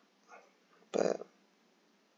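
A single short vocal sound from a person, about a second in, heard against a quiet room.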